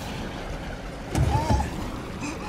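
Film sound effects: a steady rushing noise, with a heavy low thump and a short wavering tone a little after a second in.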